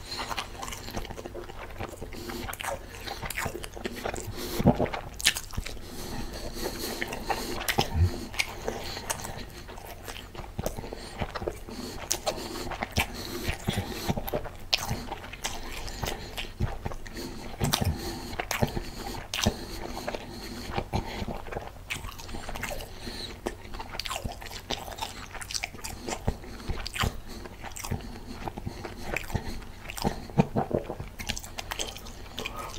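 Close-miked eating sounds of a man chewing food: irregular sharp mouth clicks and smacks throughout, with a few louder ones about five and eighteen seconds in.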